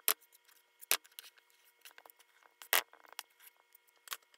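A utensil scraping and knocking against a metal baking pan while mashed potatoes are spread and smoothed: a few sharp knocks, the loudest near three seconds in, among softer clicks.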